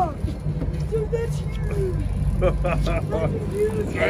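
Fishing boat's engine running steadily, a low rumble, with people talking over it.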